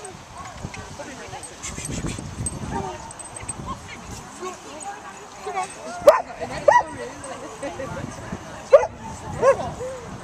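A dog barking in short, sharp barks, four of them spread over the second half, over a background murmur of voices.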